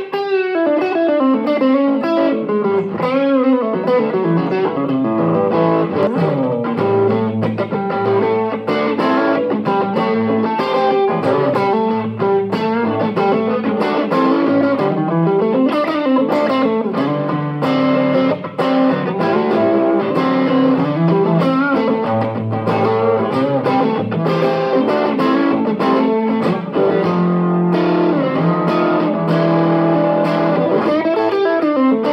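Overdriven electric guitar played through an Origin Effects RevivalDrive Compact in its direct P/Amp mode into a Line 6 Powercab 112 powered speaker, heard through a phone's microphone in the room. A continuous stream of picked notes and chords, with some notes bent.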